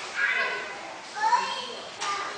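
Young children's voices calling out in two short bursts.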